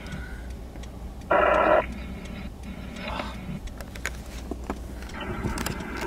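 A scanner radio inside the vehicle gives one brief, loud, tinny burst of about half a second, a second or so in, over the vehicle's steady low rumble.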